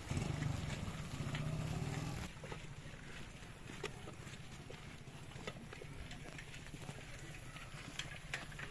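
A motorcycle engine running close by for about two seconds, cut off abruptly; then the footsteps of a group of people walking on a road, with scattered sharp clicks.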